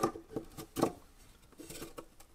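Light clicks and knocks of 3D-printed plastic storage trays being set down on a plywood drawer bottom and pushed against each other, a handful of short taps, the sharpest near the start and just under a second in. Faint guitar music runs underneath.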